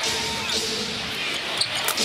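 Live basketball game sound in an arena: a low crowd murmur with the ball bouncing on the hardwood court, and two sharp knocks near the end.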